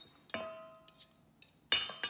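Metal forks clinking against a stainless steel mixing bowl as cooked pork is pulled apart. A strike about a third of a second in leaves the bowl ringing for about a second, followed by a few more clinks, the loudest near the end.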